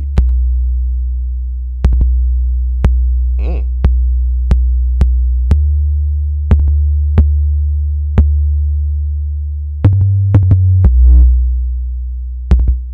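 Deep synthesized 808 bass notes from the MPC One's Drum Synth plugin play in a drum-machine beat, with a transient shaper boosting their attack. Each note starts with a sharp click and fades away, with quick ticks and a couple of noisy hits over it. The bass steps up to a higher note about ten seconds in.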